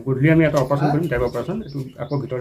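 A man speaking in a steady flow of speech.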